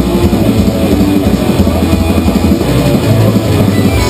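Live rock band playing an instrumental passage: electric guitars and a drum kit in a fast, driving rhythm, with no vocals.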